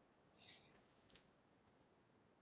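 Near silence on a video-call line, broken by a brief soft hiss about a third of a second in and a faint click a little after halfway.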